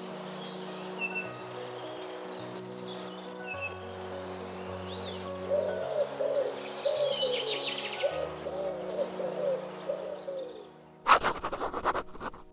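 Soft background music of sustained, slowly changing chords, layered with bird chirps and, from about halfway, a run of repeated low bird calls. A short loud scratchy burst comes near the end.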